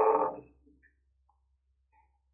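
A spoken word trailing off in the first half second, then near silence: a pause in speech.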